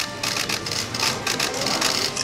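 Many camera shutters firing rapidly and overlapping, a dense irregular clatter of clicks, as press photographers shoot a fighters' face-off.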